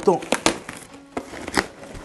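Cardboard shipping box being torn open by hand: the flaps rip and crackle, with a few sharp tears.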